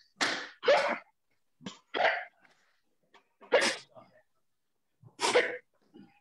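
A person's short, forceful exhalations, sharp 'ha'-like bursts of breath, about five at irregular intervals. They are the breath let out to sell sword fakes with body tension.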